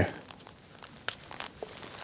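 Faint handling noise of a bare copper ground wire being threaded through the hole by the green ground screw of an electrical outlet, with a few small ticks clustered about a second in.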